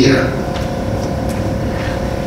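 The last of a man's word, then steady low background noise with a faint steady hum through the pause.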